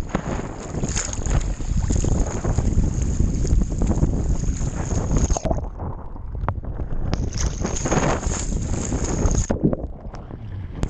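Choppy sea water splashing and sloshing around a camera held at the surface, with wind buffeting the microphone. The sound turns duller for a second or two about halfway through and again near the end.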